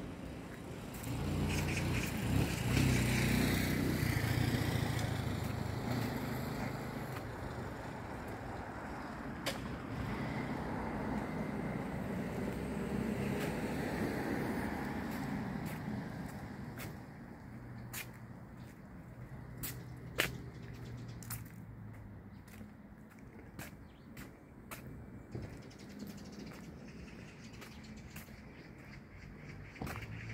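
Road traffic: cars passing by, their low tyre and engine rumble swelling and fading twice in the first half. After that the street goes quieter, with scattered light clicks.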